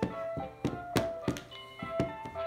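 Plush Elmo's furry hands drumming on a plastic storage-tub lid, dull thunks about three a second, over a bright keyboard-like tune playing along.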